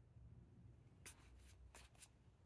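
Near silence with a few faint soft ticks and rubs in the second half: trading cards being slid across one another in the hand.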